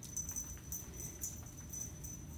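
Faint, high metallic jingling with a thin lingering ring from a ferret's harness and leash hardware as the ferret runs across a rug.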